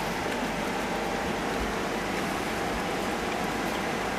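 Several baby hedgehogs lapping milk from shallow dishes, a steady dense patter of small clicks.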